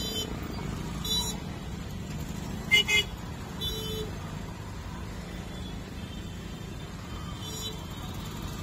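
Busy street traffic: a steady hum of engines and road noise, cut by four short vehicle horn toots, the loudest a little under three seconds in.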